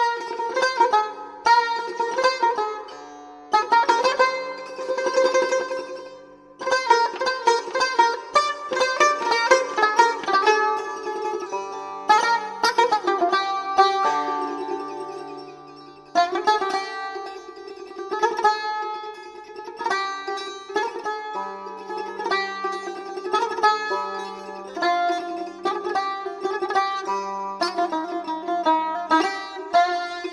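Solo Persian tar playing the instrumental answer to the vocal line in dastgah Shur: a flowing melody of plucked notes, with stretches of fast repeated strokes on held notes, in phrases separated by a few short breaks.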